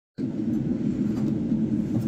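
A steady low rumble of background noise, with a couple of faint ticks in it.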